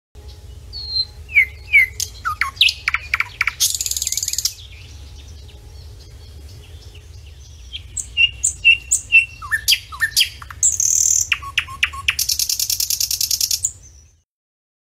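Songbirds singing: a string of varied chirps and whistled notes with two fast, high trills, one a few seconds in and a longer one near the end, over a steady low rumble.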